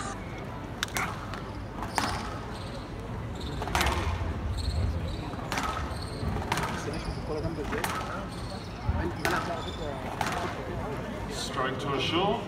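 A squash rally: the ball is struck by racket and hits the walls, a sharp crack about every second or so.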